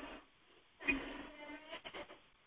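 A few faint quick taps and scrapes of chalk on a blackboard as a number is written, just after a short quiet stretch of a voice. Heard over a narrow, phone-like conference-call line.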